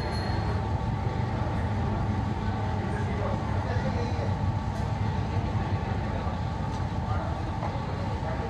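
Steady low hum and hiss of a large store's indoor ambience, with one faint click about halfway through as a putter taps a golf ball on an indoor putting green.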